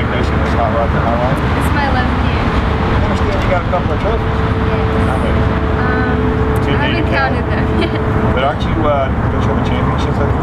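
Indistinct voices talking over a steady low rumble, with a steady hum running through the middle few seconds.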